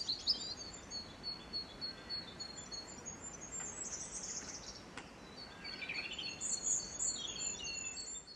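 Small birds chirping, with a rapid repeated high note and louder bursts of song in the middle and toward the end, over a faint background hiss.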